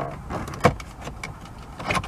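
Plastic retaining clips of a Lexus GS300's dashboard vent panel popping loose as the panel is pried up with a plastic trim removal tool: a few sharp clicks with plastic creaking between them, the loudest about two-thirds of a second in.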